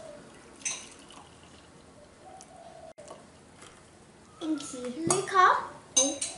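Light clink of a stainless steel milk jug against a ceramic mug about a second in, with faint kitchen knocks, while milk is poured into the mugs; a child's voice comes in near the end.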